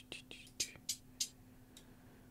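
Soft, short hissy "ts" ticks in a hi-hat rhythm, about three a second, with a faint steady hum underneath.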